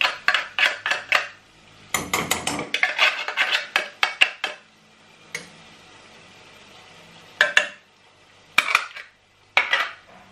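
A wooden spatula scraping canned mackerel in tomato sauce out of a metal tin into a non-stick frying pan: quick runs of taps and scrapes of tin and spatula against the pan in the first half, then a few separate knocks.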